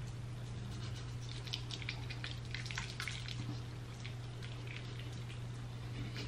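Fingertips massaging a foamy facial cleanser over the face: faint, scattered wet squishing ticks over a steady low hum.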